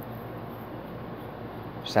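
Steady low background hum and hiss with no distinct event in it; a man starts speaking just before the end.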